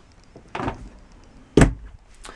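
A cabinet door under a travel-trailer bathroom sink being shut: a soft knock about half a second in, then a sharp, loud clack as the door closes about a second later.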